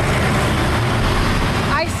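Steady street and traffic noise with a low vehicle engine rumble, from emergency vehicles and passing cars. A woman's voice starts speaking near the end.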